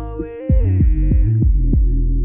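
Instrumental stretch of a hip hop beat: deep, pulsing bass with a held synth chord, and a quick run of bass hits that glide sharply down in pitch, after the bass cuts out briefly before the half-second mark.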